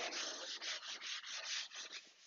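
Scotch-Brite pad wet with WD-40 scrubbing surface rust off a cast-iron jointer table in quick back-and-forth strokes, about five a second, stopping near the end.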